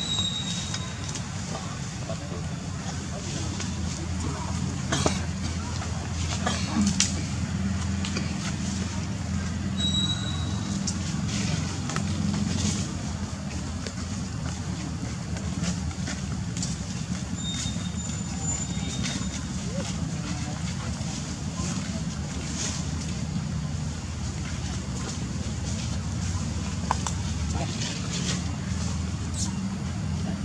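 A steady low rumble under indistinct background voices, with a few sharp clicks scattered through it.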